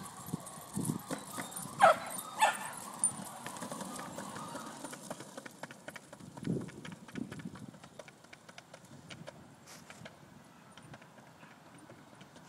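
Dogs' paws and a skateboard's wheels rolling and clicking on a concrete sidewalk, a quick patter fading as the dog-drawn skateboard moves away. Two short high cries stand out about two seconds in.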